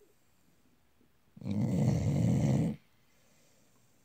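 Sleeping pit bull snoring: one loud snore about a second and a half long, starting about a second and a half in.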